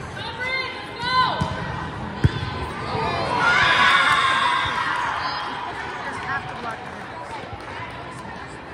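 Volleyball rally in a gym: two sharp ball-contact smacks about a second and a half and two seconds in. Then players and spectators shout and cheer together, loudest around the middle before fading.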